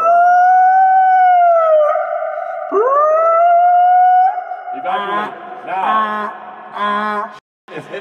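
A man's long howling call, made with his hand at his mouth, given twice. Each call rises in pitch and then holds steady for a second or two. Three shorter wavering cries follow and end abruptly near the end.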